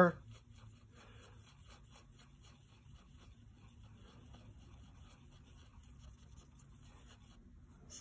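Faint scratchy swishing and ticking of a small paintbrush stirring acrylic craft paint in the well of a plastic palette, over a low steady hum.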